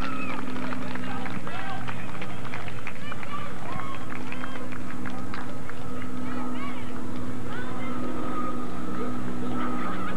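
Voices of players and spectators calling out across a soccer field, many short shouts with no words made out, over a steady low hum.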